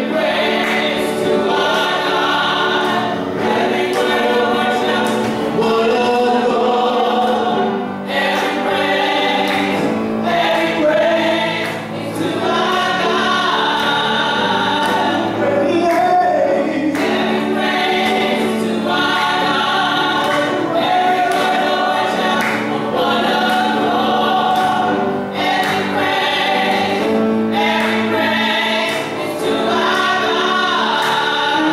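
Gospel praise team of several singers singing together in a church sanctuary, over a steady beat.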